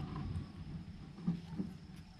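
Faint scraping and rustling of a hand and a twig stirring the ashes and embers of a dying campfire, with a couple of soft knocks about halfway through. A thin steady chirr of crickets runs underneath.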